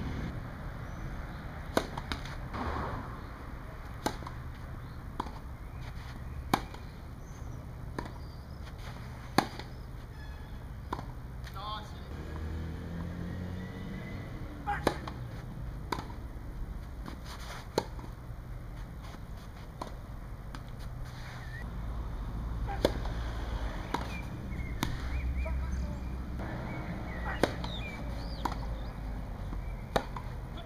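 Tennis ball being hit back and forth in rallies: sharp single knocks of racket on ball every second or two, with a pause between points, over a low background rumble.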